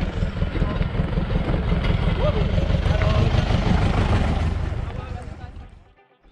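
A small open off-road vehicle with riders aboard driving on a gravel track, heard over a heavy low rumble; the sound builds toward the middle and fades away near the end.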